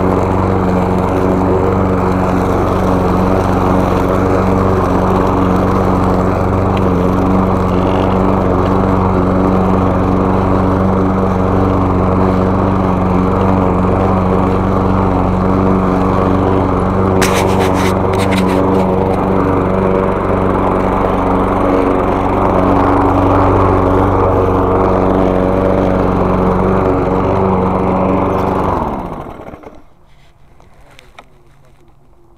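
Gas walk-behind rotary lawn mower with a rear grass bag, its small engine running steadily while mowing a leaf-covered lawn, with a few sharp clicks a little past halfway. Near the end the engine is shut off, winding down and stopping.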